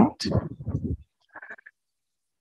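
A woman's voice trailing off at the end of a sentence, followed by a faint brief sound and then dead silence.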